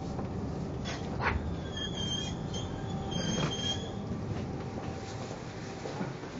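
Metro train running, a steady rumble with two brief high squeals, about two seconds and three and a half seconds in.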